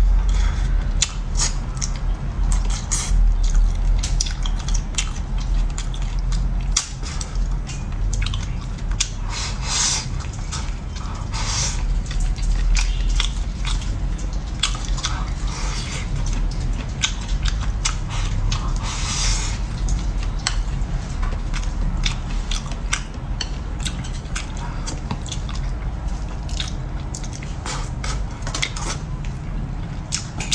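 Close-miked chewing and wet mouth sounds of a person eating soft fish and rice, with many small clicks and smacks throughout.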